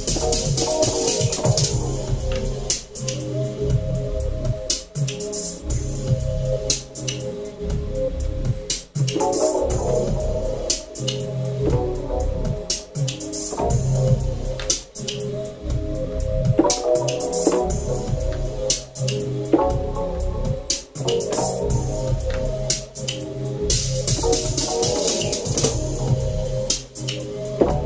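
An electronic beat played live: a regular drum pattern and bass line under chords played on a synthesizer keyboard.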